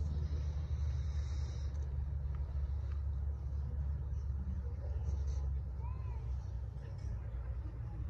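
A steady low rumble with faint voices of onlookers over it.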